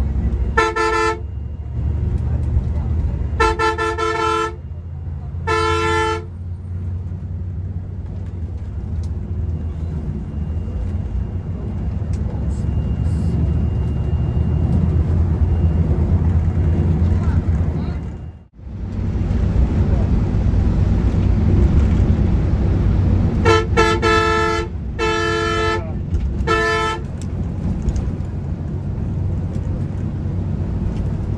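Heard from inside the cab, a Volvo multi-axle coach's engine runs steadily. A horn honks three short times in the first six seconds and three more times from about 23 to 27 seconds in. The sound cuts out for a moment about 18 seconds in.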